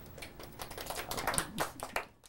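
Clicking at a computer keyboard and mouse: a quick, uneven run of small clicks that grows denser and louder in the second half.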